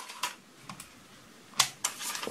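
Light plastic clicks from the folding arms of an FQ777 FQ35 toy drone being swung out and snapping into their locking catches. About five clicks, the loudest about a second and a half in.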